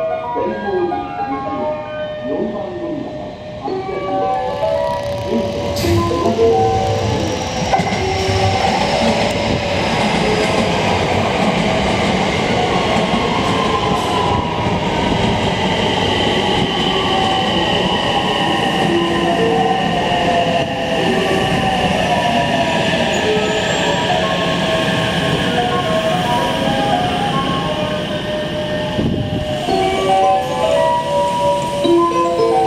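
A JR West 225 series 5000-number electric train pulling into the platform, with wheels rumbling on the rails. Its inverter-driven traction motors whine, the whine slowly falling in pitch as the train brakes to a stop.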